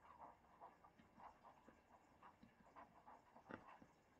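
Near silence, with faint, scattered short scratches of a stylus writing on a tablet.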